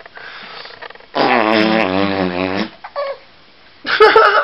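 A man's low voice making one long, wavering, growly play noise of about a second and a half. A baby breaks into laughter just before the end.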